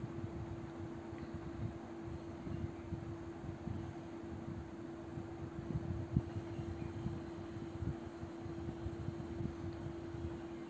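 A steady low hum over faint room noise, with a few faint soft taps, the clearest about six seconds in, as a plastic dough scraper cuts logs of dough on a stone countertop.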